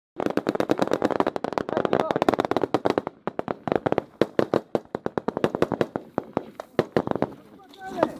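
Rapid small-arms fire: many overlapping shots a second from several weapons, densest in the first three seconds, then thinning and stopping about seven seconds in.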